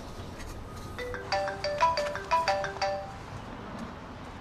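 Mobile phone ringing with a melodic ringtone: a quick run of short notes that starts about a second in and plays for about two seconds.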